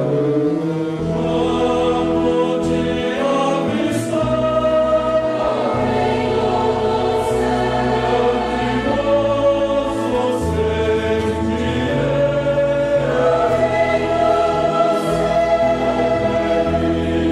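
Mixed choir singing a hymn in parts, accompanied by a small orchestra of strings, saxophones and brass, with a bass line moving in long held notes.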